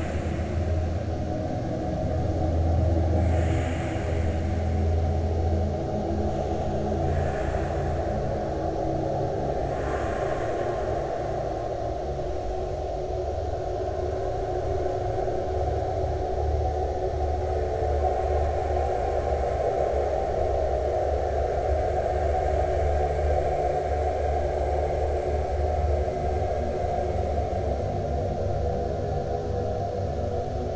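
Muffled, rumbling ambient music made from an old ballroom dance-band recording. The high end is cut away, leaving a steady low drone and hum, with faint swells higher up in the first third.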